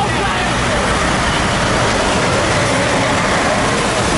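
Large police vehicles' engines running close by, with tyres on the wet road adding a hiss: a steady, loud din.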